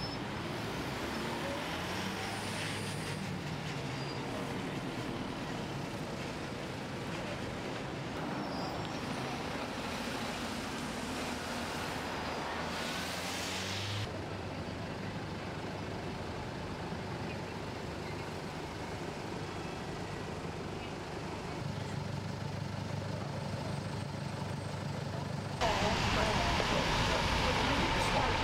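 Street traffic noise: engines running in slow traffic with a steady low hum. The sound changes abruptly about halfway through, and near the end a louder, steadier rush of noise takes over.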